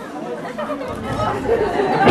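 Voices talking and chattering in a hall during a short break in live rock music.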